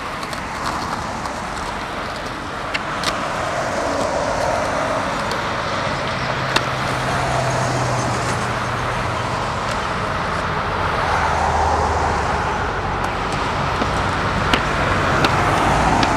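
Road traffic on a multi-lane street: cars passing with steady tyre and engine noise that swells as vehicles go by, over the rolling of skateboard wheels on pavement. A few short sharp clicks are scattered through it.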